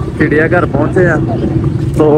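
A person's voice speaking briefly over a steady low hum of vehicle engines.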